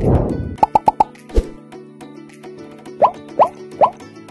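Intro jingle music with cartoon sound effects: a downward swoosh at the start, a quick run of four plops just before a second in, a low thump, then three rising bloops near the end.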